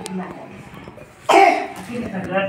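A person coughs once, loudly, a little past the middle, over low voices.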